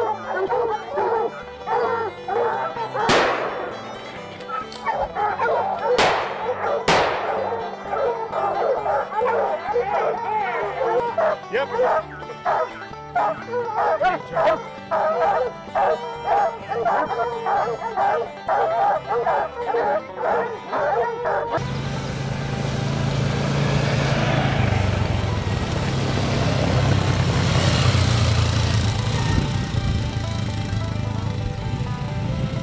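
A pack of bear hounds barking and baying nonstop at a black bear, with three sharp cracks cutting through the barking about three seconds in and twice more around six to seven seconds in. The barking stops abruptly about two-thirds of the way through, giving way to background music with a steady bass line.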